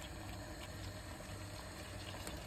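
Tomato sauce simmering gently in a frying pan on low heat, a faint, steady bubbling.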